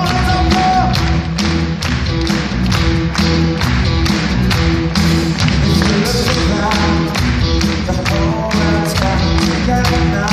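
Live pop band playing at a concert, heard from the audience: a steady drum beat under keyboards, with held melody notes near the start and again near the end.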